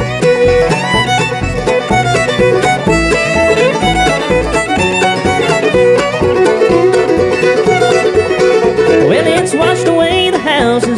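Live bluegrass band playing an instrumental break, with the fiddle out front over banjo, mandolin, acoustic guitar and an upright bass keeping a steady beat.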